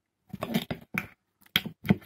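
Close-up eating sounds from a jacket potato meal with crisps, eaten with knife and fork: a few short, sharp clicks and crunches, the loudest two near the end.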